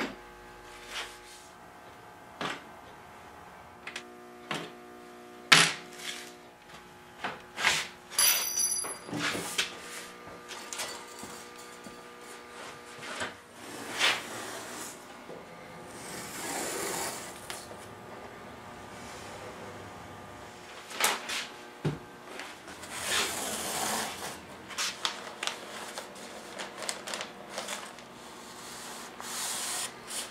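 Workshop handling sounds: scattered sharp clicks and knocks in the first half as hardware and the lid are taken off a harpsichord case, then longer rasping stretches of masking tape being pulled off its roll, near the middle and again later.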